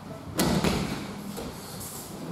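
Aikido partner hitting the tatami mats in a breakfall after a throw: one sharp slap and thud about half a second in.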